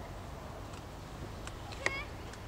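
A single short, high-pitched animal call near the end, over a steady low outdoor rumble with a few faint clicks.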